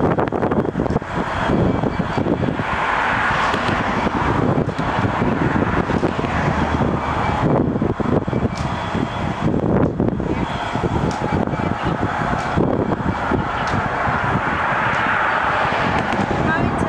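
EWS Class 66 diesel-electric freight locomotive, with its two-stroke V12 engine, running steadily as it moves slowly through the yard: a continuous rough engine noise that swells about three seconds in and again near the end.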